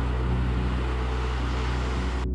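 A steady low mechanical hum with an even hiss over it, unchanging in pitch and level.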